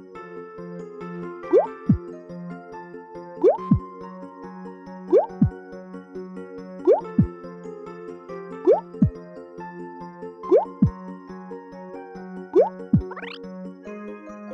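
Gentle children's music with cartoon plop sound effects about every two seconds, seven in all. Each is a quick rising bloop followed by a falling plop, marking a ball dropping onto the tray. Near the end comes a longer rising whistle.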